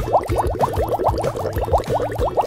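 A cartoon-style editing sound effect: a fast run of short rising bubbly blips, about ten a second, over background music with a low beat.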